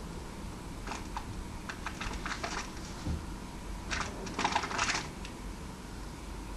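A crow pecking and tugging at a plastic-wrapped sausage packet on a stone ledge: scattered sharp taps and crinkles, with a denser burst of crinkling about four to five seconds in.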